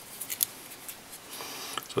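A few small sharp ticks, then a soft rustle near the end, from fingers handling tying thread and synthetic dubbing on a fly-tying vise.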